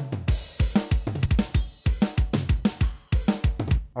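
Playback of a multitrack drum recording: kick, snare and toms hitting about four times a second under cymbals, balanced by gain alone with no EQ or compression.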